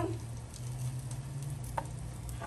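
Rice browning in oil in a pan, a steady sizzle, over a low steady hum. A single short click comes near the end.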